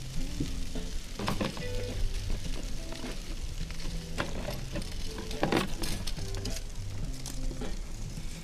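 Soft background music with a steady bass line, with a few short clicks and knocks as a wire grill rack is handled and rubbed with oil by hand.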